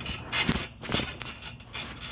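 Trampoline mat and springs under light bounces: three short noisy bursts about half a second apart.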